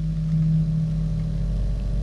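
A steady low droning hum with one held low tone that fades out near the end.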